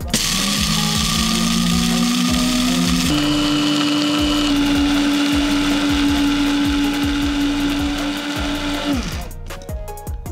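AGARO Grand electric blade coffee grinder running loudly as it grinds whole coffee beans into grounds. Its motor whine steps up in pitch about three seconds in, holds steady, then falls away as it stops about nine seconds in. Background music with a beat plays underneath.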